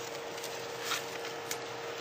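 A steady low-level hum with hiss, and a couple of faint ticks in the middle.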